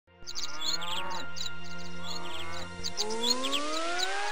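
Intro soundtrack of songbirds chirping over a low steady hum. The hum stops about three seconds in, and a slowly rising whistle-like glide begins.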